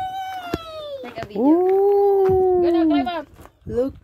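A child's voice making long drawn-out calls rather than words: a falling call, then a loud held call of nearly two seconds, then a short one near the end.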